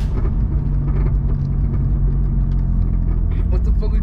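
Car engine running with a steady low rumble, heard from inside the cabin.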